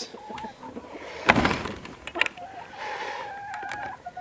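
A flock of hens clucking, one drawing out a long steady call through the second half. A short louder knock about a second and a half in.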